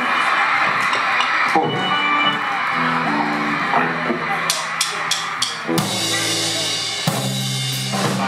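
Live band on a club stage: crowd noise at first, then scattered guitar and bass notes and drum-kit hits, with a handful of sharp cymbal strikes about halfway through, before the band comes in together near the end.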